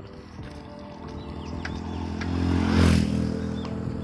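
A motorcycle approaching and passing close by: its engine grows louder to a peak about three seconds in, then fades. Birds chirp in short falling calls.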